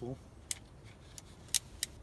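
Sharp clicks from a pistol crossbow being handled in the hands, four in under two seconds, two of them close together near the end.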